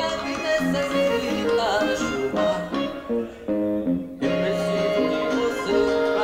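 A song with a guitar-led instrumental backing track and a man singing over it into a microphone. The music thins out briefly about three seconds in, then comes back in full just after four seconds.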